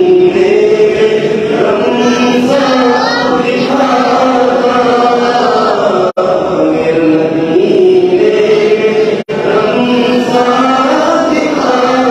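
A man chanting an Urdu naat unaccompanied into a microphone, in long held melodic phrases. The sound cuts out very briefly twice, about six and nine seconds in.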